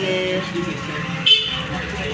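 A single short, high-pitched vehicle horn beep a little over a second in, over a steady low traffic rumble.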